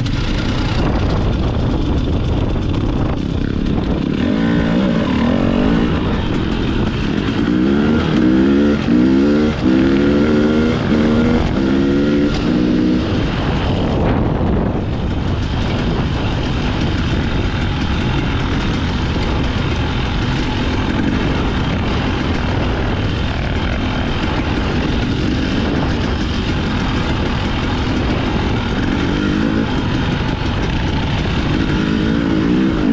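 Husqvarna TX300i two-stroke fuel-injected dirt bike engine heard close up while riding. Between about 4 and 13 seconds in it revs up and drops back several times in quick succession, then runs more steadily.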